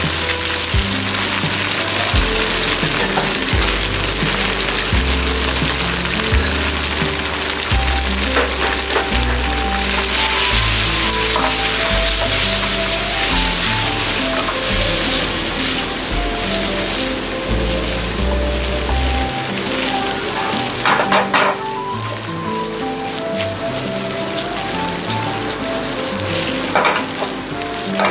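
Pesto-coated pasta sizzling in a hot granite-coated pan as it is stirred with a wooden spatula, under background music whose bass line drops out about two-thirds of the way through. A few sharp clicks of utensils on the pan come near the end.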